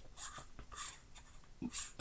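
Faint rubbing and scraping of hands turning a threaded part onto the aluminium body of a 1Zpresso JX hand coffee grinder, in a few short strokes.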